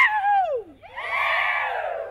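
A high whoop sliding steeply down in pitch, then a crowd of children shouting together in answer, many voices falling in pitch, as part of a Polynesian dance lesson.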